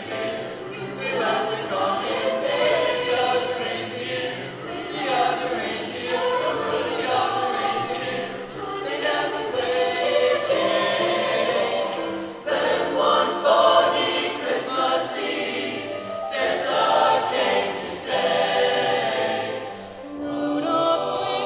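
High school mixed choir singing together in sustained phrases that swell and fall, with a brief break between phrases about twelve seconds in.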